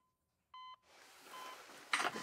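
Hospital patient monitor beeping: one clear electronic beep about half a second in, then a shorter, fainter one about a second later. A soft hiss rises under it from about a second in, and a sharp click comes near the end.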